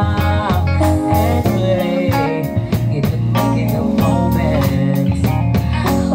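Live band playing: electric guitar over bass notes and a steady drum beat.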